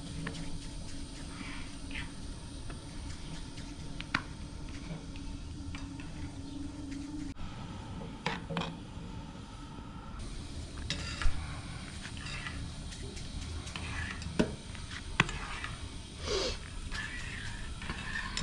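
A metal spoon clinking now and then against a small steel bowl as melted butter is stirred, with soft handling of dough between the clinks.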